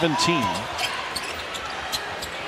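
Basketball dribbled on a hardwood court, sharp bounces over the steady murmur of an arena crowd.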